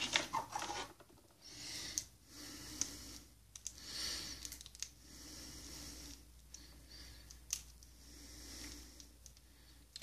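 Faint handling of a plastic action figure: soft rubbing and a few small clicks as it is picked up from a shelf and turned in the hand.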